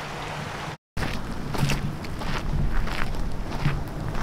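Running water of a shallow river, broken off by a brief dropout under a second in; after it, wind buffeting the microphone over footsteps on a dirt and gravel trail.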